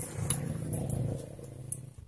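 A man's low, held grunt of effort, lasting nearly two seconds, as he strains on a long-handled socket wrench to tighten the nut on a scooter's rear CVT pulley.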